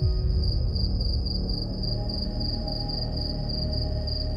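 Cricket chirping, a rapid pulsing high trill, over a low dark music drone that comes in suddenly at the start. Fainter sustained tones join the drone about halfway through.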